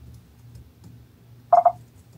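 A brief, loud two-pulse beep-like tone about a second and a half in, over a low steady room hum.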